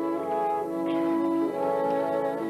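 Orchestral film score with a brass melody in held notes, changing pitch a few times.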